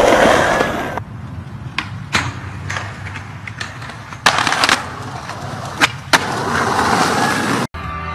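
Skateboard wheels rolling on concrete pavement, with a series of sharp wooden clacks as the board's tail pops and the board lands. The audio cuts off suddenly shortly before the end.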